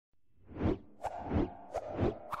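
Cartoon sound effects for an animated logo: two quick swishes that sweep downward in pitch, each followed by a short pop.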